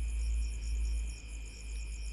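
Night insects, crickets, chirping in steady high-pitched pulsing trills, over a low rumble that eases about a second in.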